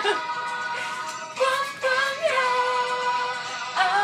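Music with a woman singing: a song with long held notes, one held for over a second, and a new sung phrase starting near the end.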